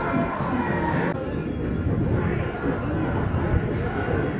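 Football crowd in the stands: many voices talking and calling over one another at once. The sound changes abruptly about a second in.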